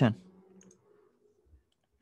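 A few faint computer clicks as text on the screen is selected.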